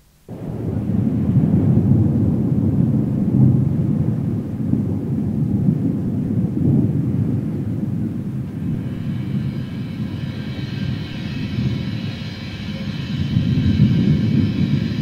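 A low, rumbling wind-and-storm noise starts suddenly out of tape hiss and gusts steadily, a sound-effect intro on a metal demo tape. A sustained dark keyboard chord fades in under it about two-thirds of the way through.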